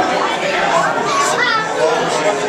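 Many children's and adults' voices chattering and laughing over each other, with a young girl's high voice rising above them a little past the middle.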